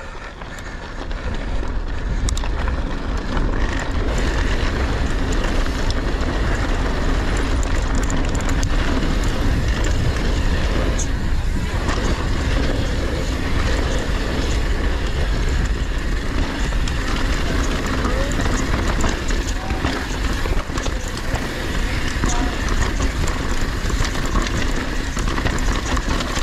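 Mountain bike descending a dirt and gravel downhill trail: wind rushing over the camera microphone with tyres rolling over dirt and the bike rattling and clicking, building up over the first two seconds as it picks up speed and then running steadily.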